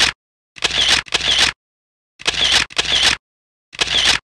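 Camera shutter sound effect, repeated in pairs of half-second snaps about every one and a half seconds, with dead silence between them.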